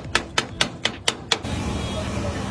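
Metal cleaver chopping chicken on a flat iron griddle, a run of sharp metallic clacks about four a second that stops about one and a half seconds in. Street background noise follows.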